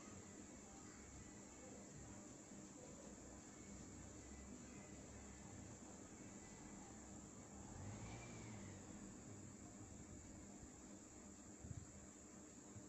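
Near silence: room tone with a faint steady hiss and low hum, and a faint tone that rises and falls about eight seconds in.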